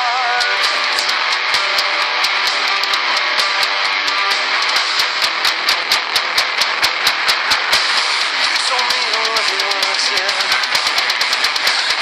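Jackson electric guitar playing a metal part along to a full-band backing track, with drums beating rapidly and evenly through the middle.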